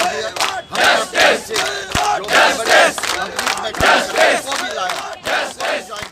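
A crowd of protesters shouting a slogan in unison, 'Only solution, relocation', in rhythmic repeated shouts.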